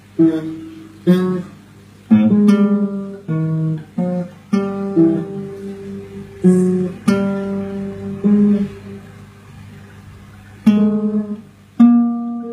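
Acoustic guitar played in a stop-start way: chords strummed or plucked one after another, each left to ring briefly, with short pauses between.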